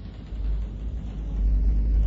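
A low, deep rumble that starts about a third of a second in and grows steadily louder.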